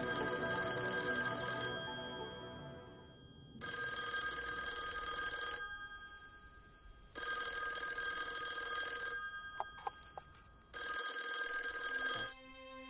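Corded landline telephone ringing four times in an even cadence, each electronic ring fading away before the next begins.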